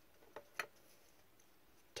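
Near silence with two faint, short clicks about half a second in, from trading cards being handled and shuffled in gloved hands.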